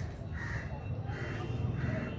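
A crow cawing repeatedly, one short caw about every two-thirds of a second, over a steady low rumble.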